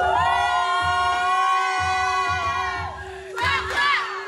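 A single voice holds one long, high cry for about three seconds over music with a steady bass beat. Shorter vocal phrases follow near the end.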